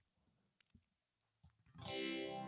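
Near silence, then near the end an electric guitar chord is strummed and rings on, sustained, on a sunburst Stratocaster-style electric guitar.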